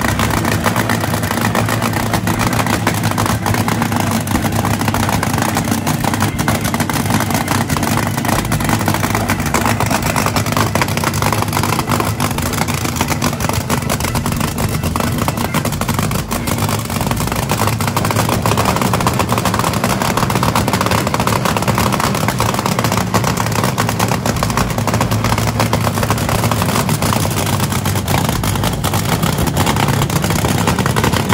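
Nitromethane-burning supercharged Hemi V8 of a vintage cackle car running loudly at a steady idle, with no big revs.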